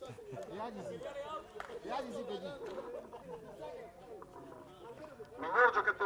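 Several people chatting at once in the background, overlapping voices at moderate level, with a louder man's voice starting to speak near the end.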